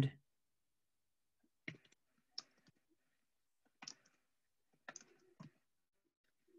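Faint computer keyboard clicks: about five isolated taps at irregular intervals, as a title is typed.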